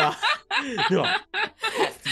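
A group of people laughing together in short bursts of chuckles and snickers.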